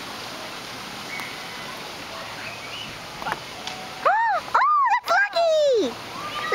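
Low outdoor noise haze, a single short click of a putter striking a mini-golf ball about three seconds in, then loud, high, wordless vocal cries in the last two seconds, each rising and falling in pitch.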